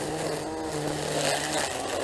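Milwaukee M18 brushless battery string trimmer running steadily, its line spinning and cutting grass: an even electric-motor whine under the whir of the line.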